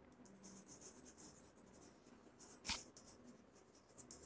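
Chalk writing on a blackboard: faint, short scratching strokes, with one sharper click about two-thirds of the way in.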